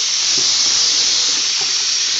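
Water running steadily from a tap into a sink, a loud, even rushing hiss.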